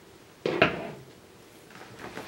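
A long Phillips screwdriver set down on a table: two quick knocks about half a second in, dying away within half a second.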